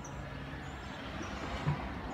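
Steady rumble of street traffic, with a brief low bump near the end.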